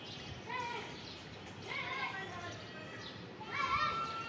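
Distant children's voices calling out three times, short and high-pitched, the last one the loudest, over faint steady outdoor background noise.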